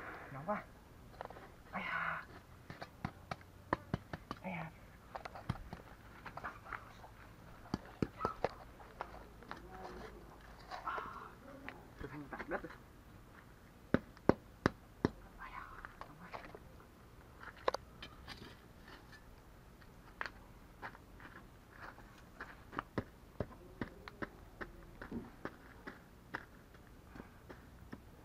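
A knife and a thin rod digging and scraping through a bed of wood ash and charcoal to uncover food buried in the embers, with scattered sharp clicks and crunches. The loudest are a few knocks about fourteen seconds in.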